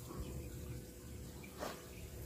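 Reef aquarium equipment humming faintly and steadily, with one soft tap about one and a half seconds in.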